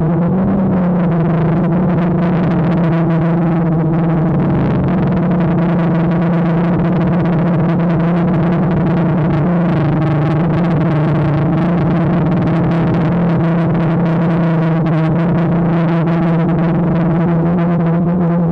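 DJI Phantom quadcopter's motors and propellers buzzing in flight, picked up close by the GoPro it carries: a steady droning hum whose pitch shifts slightly now and then.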